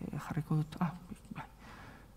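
Short, quiet fragments of a woman's voice, murmured hesitation sounds between sentences, mostly in the first second and a half.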